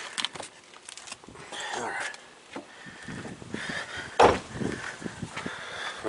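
Handling and movement noises: scattered clicks, rustles and knocks, with one heavier thump a little past four seconds in.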